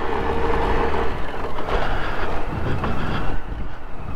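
Honda GoldWing GL1500 motorcycle's flat-six engine running at low speed as the bike rolls up to a fuel pump, a steady low rumble.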